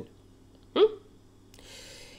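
A woman's short questioning 'mm?' about a second in, then a faint breath drawn in near the end.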